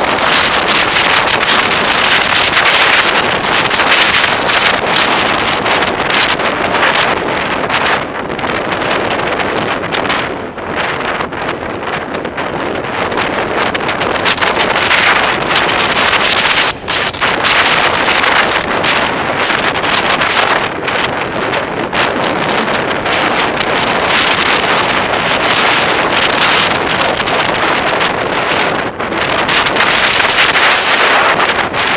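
Steady rush of wind buffeting an exposed microphone on a vehicle moving at freeway speed, mixed with tyre and road noise over grooved concrete. The noise eases briefly a few times, with short sharp dips at about 17 s and 29 s.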